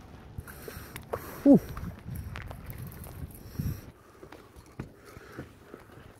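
Irregular knocks, taps and rustles as a smallmouth bass is brought aboard a small boat and handled on its carpeted deck, with a few low thuds in the middle. One short exhaled 'whew' comes about a second and a half in.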